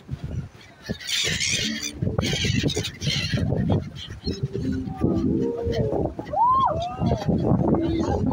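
Gulls calling as a flock flies over the water, with indistinct voices of people talking underneath and a patch of hiss about a second in.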